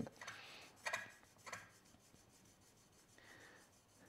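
Steel chisel back sliding on fine abrasive film over a glass plate, wet with honing fluid: a few faint rubbing strokes in the first second and a half, then a fainter one near the end, as the back is flattened and polished behind the cutting edge.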